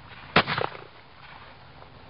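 A single sharp bang about half a second in, followed by a few quick smaller cracks.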